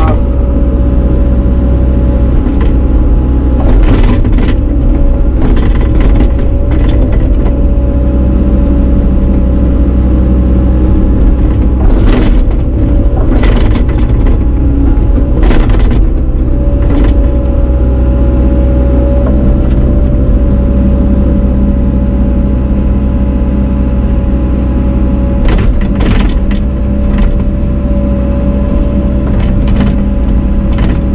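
Caterpillar excavator running under load, heard from inside the cab: a steady diesel rumble with a constant whine over it. Several sharp clunks and scrapes mark the bucket digging through snow and dirt.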